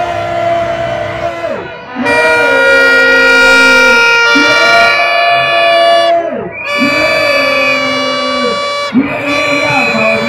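Plastic trumpet horns blown in long, steady blasts of a second or two each, loudest from about two seconds in, with voices under them.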